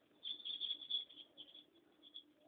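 Calligraphy pen nib scratching across paper as an ink stroke is drawn: a faint rasping scratch for about a second, then a few lighter scrapes.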